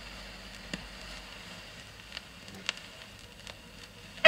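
Stylus tracking the lead-in groove of a 7-inch vinyl single: steady faint surface hiss with a few scattered clicks and pops.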